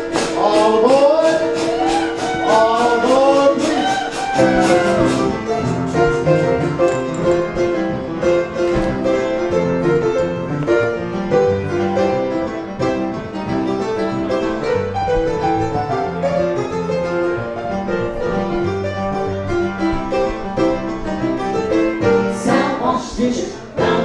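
Upright piano playing a rhythmic instrumental break of a cabaret song, steady chords over a walking bass. For the first few seconds a woman's voice sings sliding, wordless notes over it, then drops out and the piano carries on alone.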